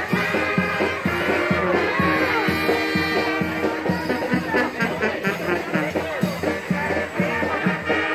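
Dance music played by a band, with a steady quick beat running throughout.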